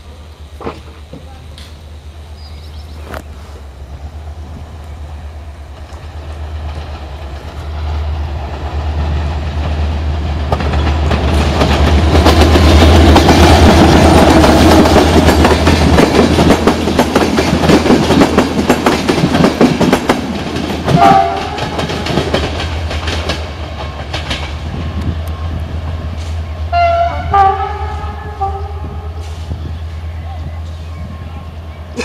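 A locomotive-hauled passenger train passing close by, its wheels clattering over the rail joints, loudest in the middle and fading as it moves off. A train horn sounds briefly twice in the second half.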